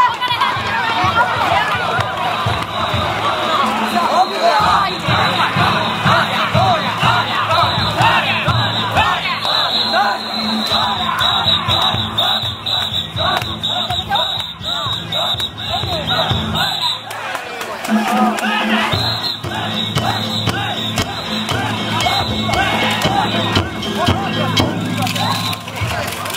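A crowd of danjiri haulers shouting together, over the float's festival music of drums, hand gongs and bamboo flute, with steady rapid percussion.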